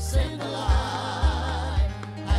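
Gospel worship song: voices singing over a church band, with a steady low beat about twice a second.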